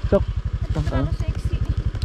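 Motorcycle engine running steadily at low revs, its exhaust beat an even stream of low pulses, about fifteen a second.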